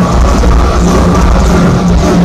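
A live metal band playing at full volume through a venue PA, with guitars and drum kit, heard loud and dense from within the crowd.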